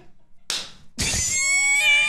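A man laughing hard: a short breathy gasp, then about a second in a long, high-pitched squealing laugh that rises a little in pitch.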